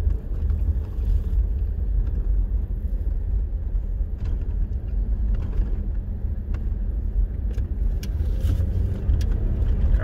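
Steady low rumble of a car's engine and tyre noise, heard from inside the moving car's cabin.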